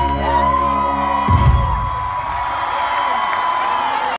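A live band's held closing chord ends on a final hit about a second and a half in. The audience screams and cheers over it and carries on after the music stops.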